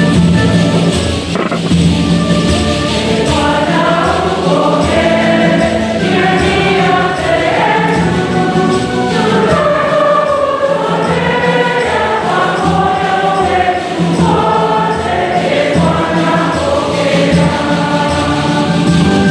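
A church choir singing a hymn with instrumental accompaniment, the melody moving steadily over sustained low notes without a break.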